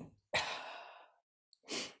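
A person's breathy sigh, about a second long and fading out, with a short breath in near the end.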